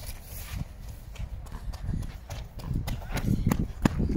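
Running footsteps on a rubber athletics track, the sharp foot strikes coming faster and louder in the second half as a runner nears, over a steady low rumble.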